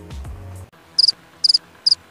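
Background music cuts off abruptly under a second in, followed by a cricket-chirping sound effect: short, high chirps about two a second, each a quick double or triple pulse.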